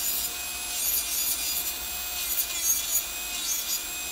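Electric nail drill (e-file) running, its bit grinding down the acrygel layer on a sculpted fingernail: a steady rasping hiss with a faint steady hum. The old coating is being thinned before a colour change.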